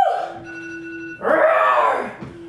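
A woman's voice sliding down off a high held note, holding a steady lower note, then letting out a loud, breathy cry from a little past halfway.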